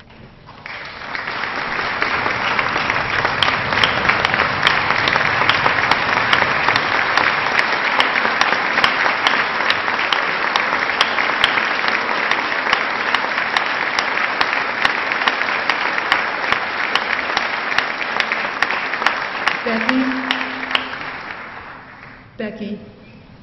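Large audience applauding, a long ovation of many people clapping that builds over the first couple of seconds and fades away near the end.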